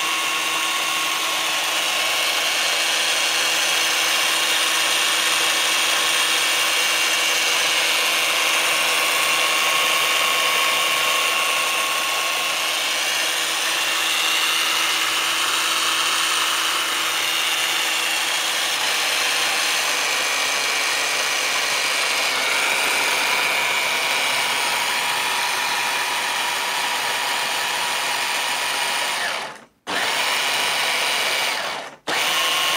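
Top Maz Racing 1:14 Ford Mustang GT4 RC car's electric motor and all-wheel-drive gear train whining at full throttle, the wheels spinning freely off the ground. A steady whine that cuts out for a moment near the end.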